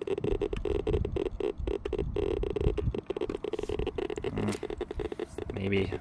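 Berthold LB 1210 B Geiger-counter ratemeter clicking out its counts, dozens of random clicks a second. The count rate is very slightly elevated over copper shale that carries traces of uranium.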